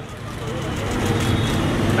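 A road vehicle's engine running nearby, a low rumble that grows louder, over general street traffic noise.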